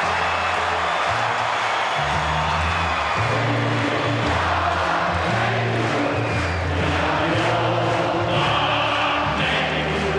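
Music with a stepping bass line over a large stadium crowd cheering and singing along as the winning team celebrates.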